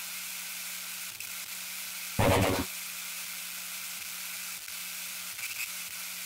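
Steady hiss with a faint low hum, broken by one short, loud burst of noise from the outro's sound effects a little over two seconds in.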